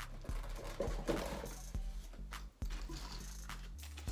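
Quiet background music under irregular small clicks and knocks of objects being handled, about a dozen, unevenly spaced.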